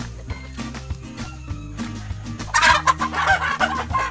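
Gamefowl hen squawking loudly in alarm as she is caught by hand, the calls breaking out about two and a half seconds in.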